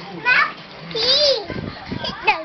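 A young child's voice: short excited vocal sounds, with one high squeal that rises and falls about a second in.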